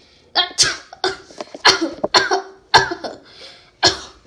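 A person sneezing and coughing repeatedly, about seven loud bursts in quick succession, roughly half a second apart.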